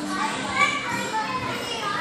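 Many children's voices shouting and chattering at once: the din of children playing in an indoor play area.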